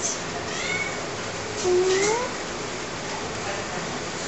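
Domestic cat meowing: a faint short call near the start, then a clearer meow about halfway through that rises in pitch.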